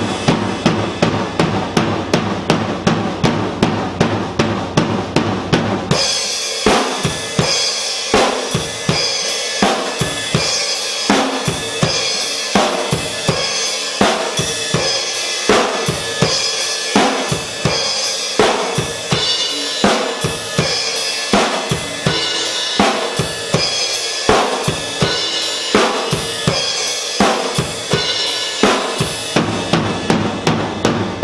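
Acoustic drum kit being played. It opens with about six seconds of rapid strokes on the drums, then settles into a steady beat of bass drum and snare with cymbal crashes.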